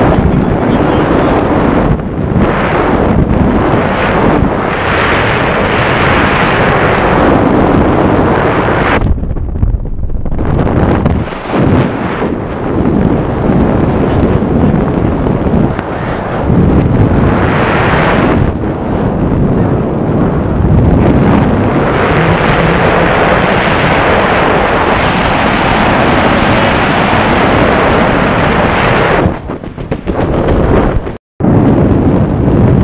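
Wind buffeting the microphone of an arm-held action camera during a tandem parachute descent under an open canopy: loud and gusty, easing briefly about nine seconds in.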